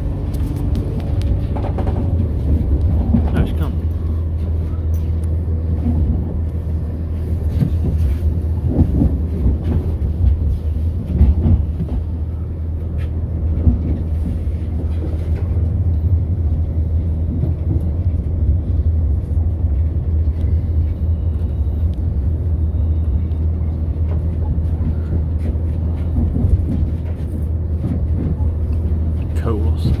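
Inside a diesel multiple-unit passenger train running along the line: a steady low drone from the engines and wheels, with scattered brief clicks and knocks from the track.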